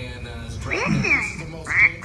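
A battery-powered talking plush puppy toy, set off by a press of its button, playing its recorded voice in a sing-song with swooping pitch: two short phrases, the second near the end.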